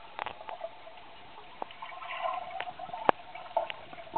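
Muffled underwater sound picked up by a submerged camera: faint bubbling with scattered sharp clicks, and a faint muffled hum from about two seconds in.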